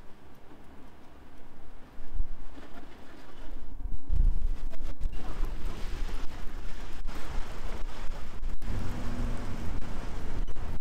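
Street noise dominated by a low, uneven rumble that grows louder about two seconds in and again about four seconds in.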